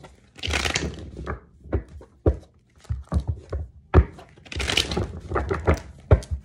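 Irregular rustling and crinkling handled close to the microphone, broken by several sharp knocks.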